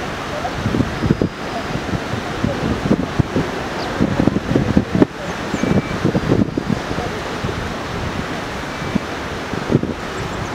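Steady rushing of wind on the microphone and a mountain river, with indistinct voices of people talking over it.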